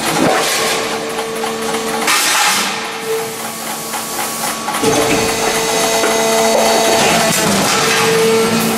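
A 400-ton hydraulic press working a progressive die through a stroke. There is a steady machine hum, a hiss about two seconds in, and a heavier stamping knock about five seconds in as the die closes on the sheet steel.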